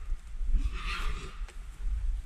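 A hunting dog running through dry leaf litter, its footfalls jolting the camera with dull thumps, and a short dog call about halfway through.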